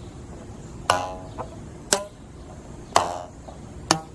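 Rubber bands stretched over an open cardboard box, a homemade lyre, plucked one at a time: four twangs about a second apart, two of them ringing briefly with a clear pitch. The pitch of each band is set by how tight it is stretched, as the strings are being tuned.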